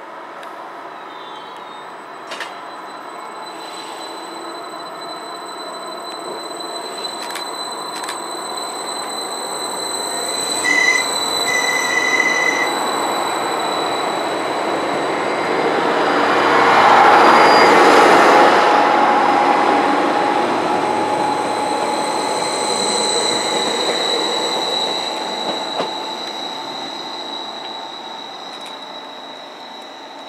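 Greater Anglia Class 755 Stadler FLIRT bi-mode unit, on its diesel power, running in along the platform. It grows louder to a peak about 17 seconds in as it draws past, then fades. A steady high-pitched squeal runs throughout, with two short high tones about eleven seconds in.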